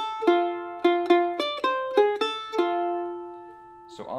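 F-style mandolin picked with a flatpick: a quick phrase of single notes and double stops, ending on a held note that rings out and fades away near the end.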